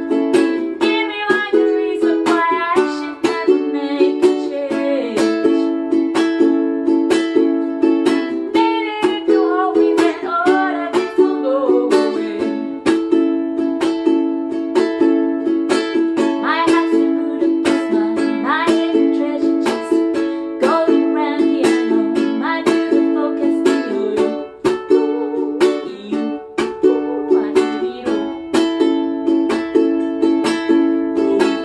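Ukulele strummed in a steady rhythm, with a woman singing a melody along with it in phrases.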